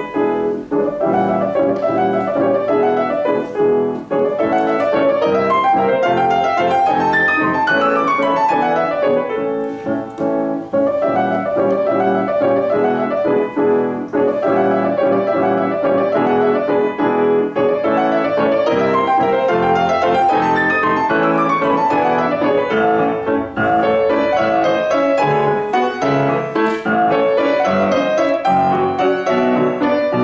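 Grand piano playing a classical piece, dense and continuous, with a falling run of notes about eight seconds in and another run about twenty seconds in.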